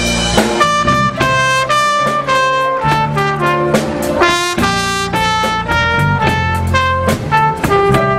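Live band playing a slow ballad: a trumpet carries the melody in a run of held notes over a steady bass line and light drums.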